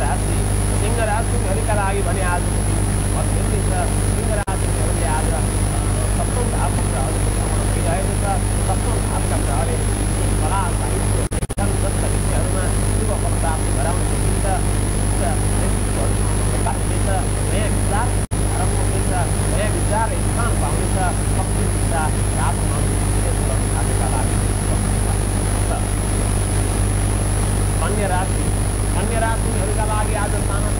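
A man talking steadily throughout, over a constant low hum and a thin high-pitched whine.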